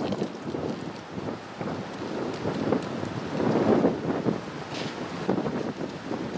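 Wind buffeting the microphone, coming in irregular gusts.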